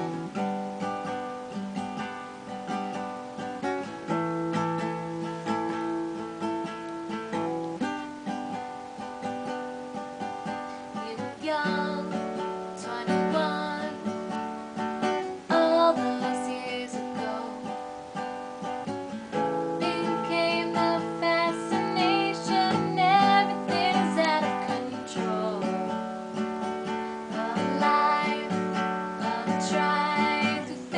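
Acoustic guitar strummed in a steady chord pattern, joined by a woman singing from about a dozen seconds in.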